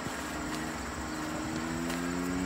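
A steady low engine drone in the background, holding a pitch that drifts slightly upward.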